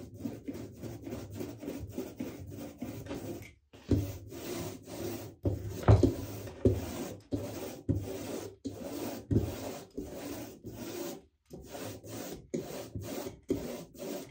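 A rubber brayer rolled back and forth over a fresh, tacky coat of matte acrylic gel medium on a gesso panel: a quick run of sticky rubbing strokes, breaking off briefly twice.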